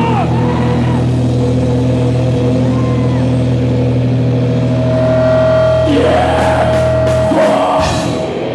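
Distorted electric guitar and bass of a live metal band holding a sustained low chord without drums, with a few short swooping notes above it and a single held, whining guitar-feedback tone from about five seconds in. The low drone cuts off shortly before the end.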